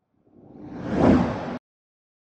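A whoosh sound effect that swells for about a second and then cuts off abruptly, accompanying an animated logo card.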